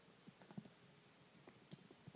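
Near silence with a few faint, scattered clicks from a Sphero BB-8 toy robot shifting on carpet in patrol mode.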